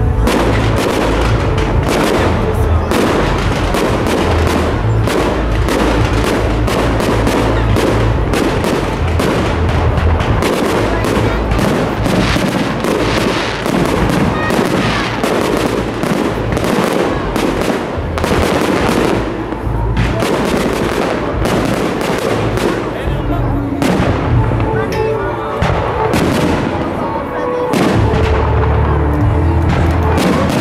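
Fireworks display: aerial shells bursting and crackling in rapid succession, many bangs close together, with music playing underneath the show.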